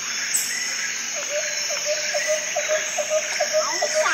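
Rural outdoor ambience: a steady chorus of insects with short bird chirps, joined about a second in by an evenly repeated short low call, about four a second, that runs on to the end.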